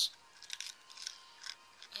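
Faint light clicks and rustles of a small clear plastic case of crystal beads being handled and tipped in the fingers, the beads shifting inside.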